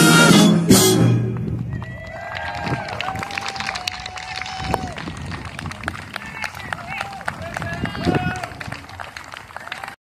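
A military concert band's final chord, with drums and cymbals, cutting off about a second in. Scattered applause from an outdoor audience follows, with a few voices calling out over the clapping.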